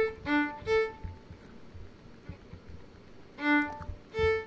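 Violin played in short, detached staccato strokes on open strings, moving between a higher and a lower string: three quick notes, a pause of about two seconds, then one more note near the end. This is open-string staccato practice, searching for the bow pressure that gives a properly separated note without too much scratchy noise.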